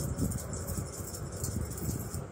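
Chili flakes being shaken from a small spice shaker, a light rattling over a steady low hum.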